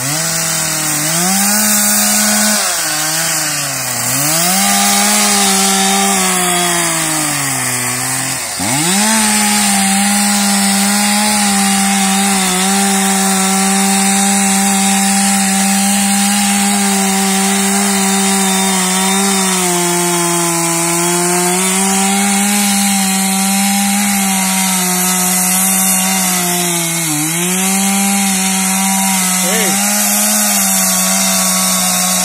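Two-stroke chainsaw cutting into a resin-rich fatwood stump at high revs. Its pitch sags sharply twice in the first nine seconds as the chain bites, then holds steady under load with brief dips later on.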